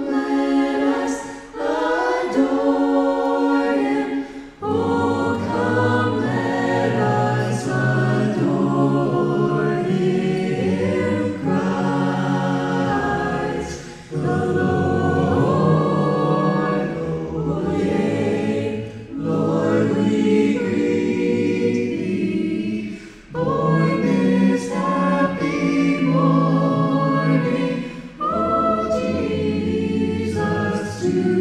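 A small vocal ensemble singing in harmony into handheld microphones, with a low bass line under the upper parts. The phrases break off briefly about four, fourteen and twenty-three seconds in.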